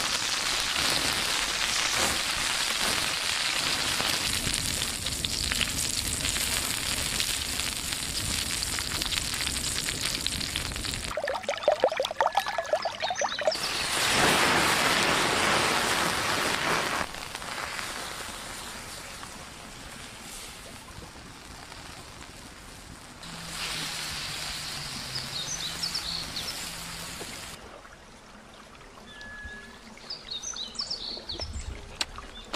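Steady hiss and crackle of a wood fire with food sizzling on a hot stone slab over it. The level changes abruptly several times, and a brief pitched sound comes about twelve seconds in.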